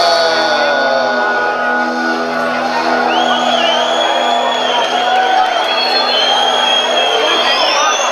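Live rock band of electric guitars, bass and drums holding a long sustained chord. A high wavering whistling tone joins about three seconds in.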